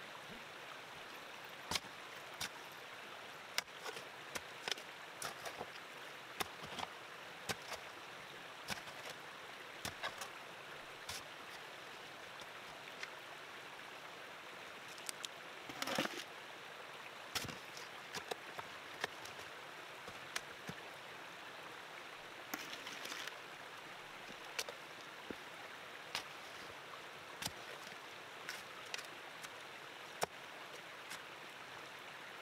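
Shovel digging into rocky, sandy ground: irregular scrapes and knocks of the blade against stones, and dug material tipped into a plastic bucket, the loudest clatter about halfway through. Behind it, the steady rush of a running creek.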